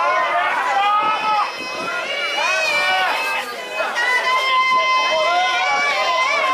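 High voices singing kiyari, the Suwa festival work chant, in long drawn-out, wavering notes over crowd noise. Several voices overlap.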